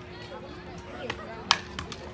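A softball popping into the catcher's mitt about a second and a half in, a single sharp smack on a swing and a miss, over faint crowd chatter.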